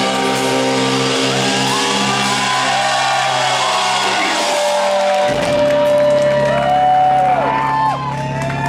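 Amplified electric guitars ringing out in a sustained drone of held notes and feedback as a rock song ends, with no drums; a steady feedback tone sets in about halfway through. Audience members shout and whoop over it.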